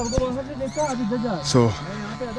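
A horse whinnying, a wavering call that falls away, under a man's talk.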